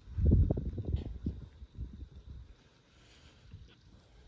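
Wind buffeting the microphone, a low rumbling in gusts for the first second and a half, then easing off to a faint background.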